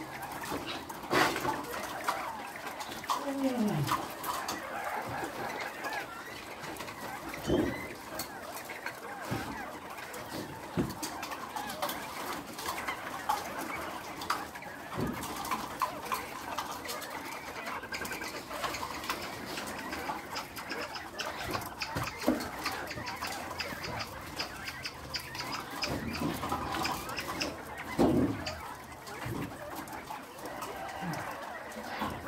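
Many caged poultry calling and clucking together in a hatchery barn, with a few longer falling calls and scattered clicks and knocks of cage wire and equipment.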